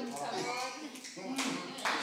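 Faint voices with light clapping, well below the level of the main speaker: listeners responding in the pause of the sermon.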